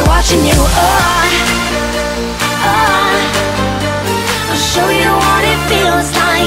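Background pop music with a deep bass line and a wavering melody over it.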